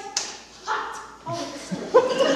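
A few short, yelp-like vocal sounds from a person, made without words, in quick succession.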